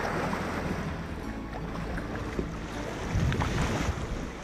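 Small waves washing in the shallows, with wind rumbling on the microphone.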